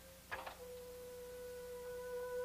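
Film score of soft sustained electronic tones, several held notes at once. A brief sound about a third of a second in is the loudest moment.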